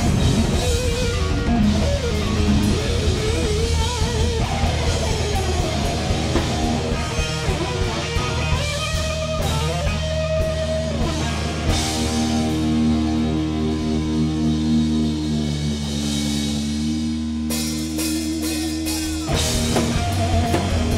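Rock band playing live with no vocals: an electric guitar plays a lead line with wavering vibrato bends over bass guitar and a drum kit. In the second half the guitar settles into long held notes.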